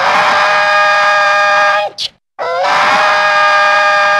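A held scream sound effect played twice in a row, each about two seconds long: the pitch slides up at the start, holds steady, then cuts off abruptly with a short high blip after it.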